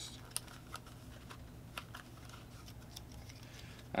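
Faint, scattered light clicks and rustling of a small toy blind box and its paper checklist being handled and opened, over a low steady hum.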